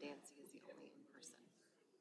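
Near silence with faint, distant murmured voices in a quiet meeting room.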